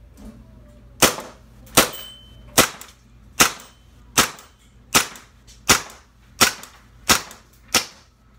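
Carbon8 M45 CQP CO2 gas-blowback airsoft pistol (1911 type) firing ten sharp shots at a slow, even pace, about one every three quarters of a second, starting about a second in; the blowback is cycling without a hitch.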